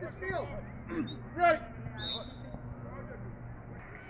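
Mostly speech: a man's short shout of "come on" and scattered calls of players and spectators at a youth soccer game, over a faint steady low hum.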